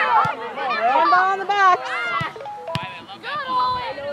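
Overlapping voices of sideline spectators, adults and children talking and calling out over one another, with a few sharp knocks among them.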